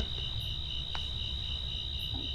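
Crickets trilling steadily: one continuous high-pitched sound with no breaks, over a faint low hum.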